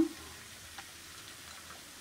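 Chopped cashews and almonds dropped by hand into a pan of halwa, with a couple of faint ticks, one about a second in and one near the end, over a low steady hiss.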